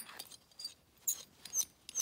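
Small screw-lock carabiner being handled: a handful of light, sharp metal clicks and scrapes as its locking sleeve is unscrewed and the gate worked.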